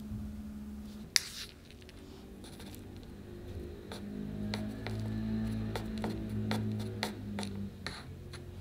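Crushed walnut pieces clicking and rustling as they are pressed by hand around the base of a cake on a wooden board, a quick run of light clicks in the second half, with one sharper click about a second in. Soft background music with sustained low notes underneath.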